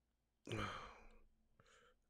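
A man's breathy sigh about half a second in, running into a drawn-out "all", the start of "all right"; the rest is near silence.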